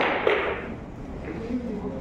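Pool balls colliding: one sharp click right at the start that rings off over about half a second.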